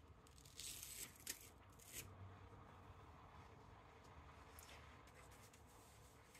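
Sublimation transfer paper being peeled off a freshly heat-pressed polyester shirt: a few faint, short paper rustles, mostly in the first two seconds.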